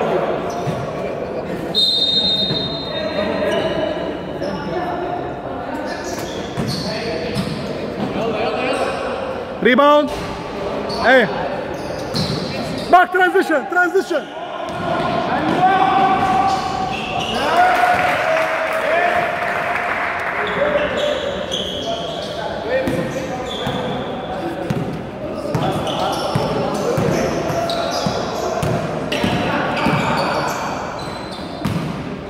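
Basketball game noise in an echoing gym: the ball bouncing on the court, a few high squeaks of shoes on the floor about ten and thirteen seconds in, and indistinct voices of players and spectators.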